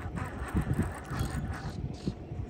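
Wind rumbling on the phone's microphone, with uneven low buffeting from the phone being moved about.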